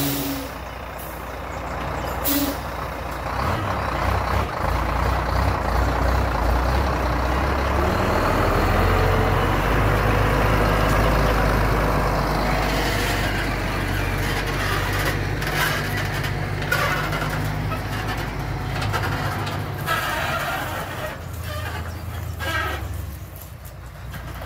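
Scania truck pulling a grain trailer moving off and driving past. A short hiss of air from the brakes comes about two seconds in, then the diesel engine pulls, loudest about halfway through and easing off near the end.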